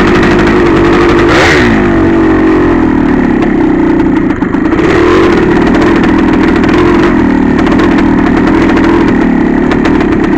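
Yamaha IT465's single-cylinder two-stroke engine under way, heard from on the bike: steady running, with the revs dipping and picking back up about a second and a half in, and a brief throttle-off near the middle before it pulls again.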